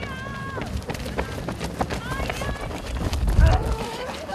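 Footsteps of a group of runners jogging on a rubber running track, many quick footfalls, with a voice briefly at the start and a louder low rumble a little past three seconds in.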